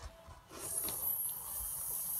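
Steady high-pitched hiss that starts about half a second in.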